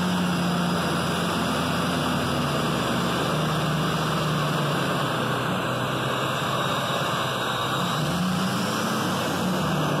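GMC Sierra pickup running in drive with its rear wheels spinning free on jack stands, a steady engine and drivetrain hum with road-free tire and driveline noise heard from inside the cab. The hum drops in pitch about three and a half seconds in and rises again near the end, as the truck is run and braked to test for warped rear rotors.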